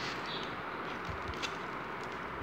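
Steady background hiss with a few faint, light clicks and taps from the Kinder Egg's plastic toy capsule being handled, the clearest about a second in.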